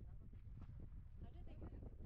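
Wind rumbling on the microphone, with faint, distant voice-like calls over it.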